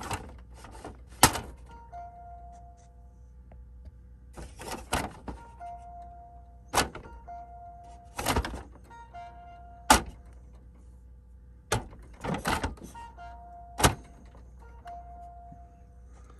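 Hard plastic knocks and clicks from an HP OfficeJet Pro 8025 paper tray being handled, about seven sharp knocks spread through. Several short steady tones, each about a second long, recur between the knocks.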